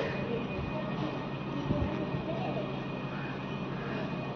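Street ambience in a residential lane: a steady low hum with faint, indistinct voices in the background.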